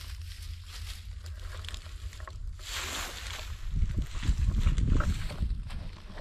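Wind rumbling on the microphone in an open field, getting much louder about two-thirds of the way in, over crackling and rustling of dry grass and weeds being pulled by a gloved hand.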